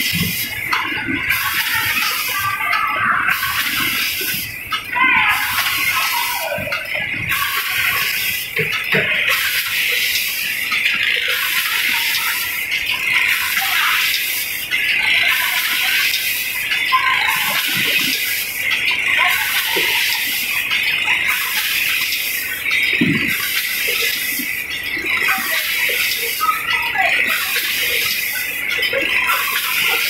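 Rotary vacuum pouch packing machine running: a steady hiss with a regular pulse about every second and a half as the machine cycles.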